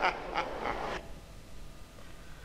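A man laughing in three short bursts, cut off about a second in.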